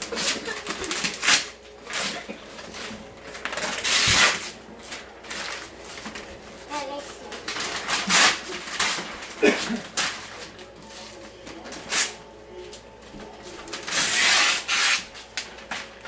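Gift wrapping paper being torn and ripped off a large cardboard box, in repeated rustling, tearing bursts.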